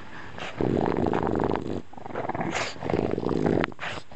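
A dog growling low in two long growls, each lasting about a second, with a short pause between them.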